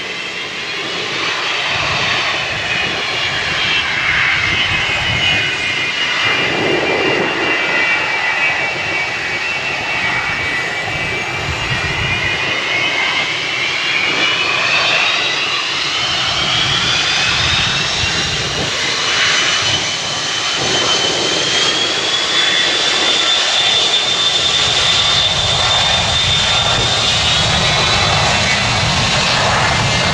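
Twin rear-mounted turbofan engines of a McDonnell Douglas MD-80/90-family airliner spooling up for takeoff. The engine whine rises in pitch from about the middle onward, then holds high and steady over a continuous rumble.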